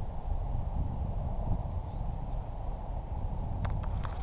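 Wind rumbling on the microphone, with a couple of faint clicks near the end.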